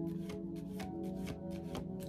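A tarot deck being shuffled overhand by hand: a quick, uneven run of light card clicks and riffles.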